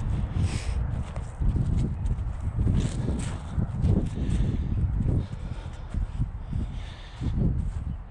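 Footsteps crunching across dry, dormant grass at a steady walking pace, with wind buffeting the microphone underneath.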